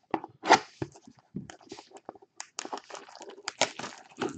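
A trading-card hobby box and its plastic wrapping being handled and torn open by hand: a run of crinkles and tearing noises, the loudest rip about half a second in and a denser patch of crackling in the second half.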